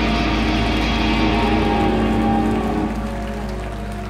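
Live rock band playing loud: electric guitars, bass guitar and drums. About two and a half seconds in, the playing thins out and the level drops, leaving held notes.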